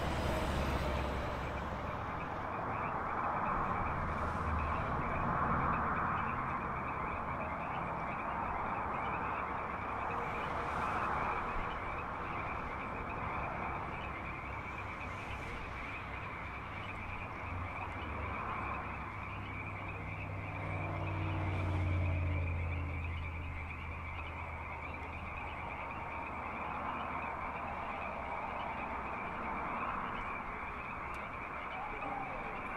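Steady, high-pitched chorus of calling frogs, with the low rumble of a passing car swelling and fading about twenty seconds in.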